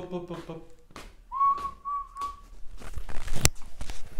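A person whistling one steady note about a second long, sliding up briefly at the start and broken twice. Near the end, a sharp knock.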